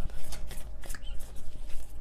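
A deck of tarot cards being shuffled by hand: a quick, irregular run of short card flicks and slaps.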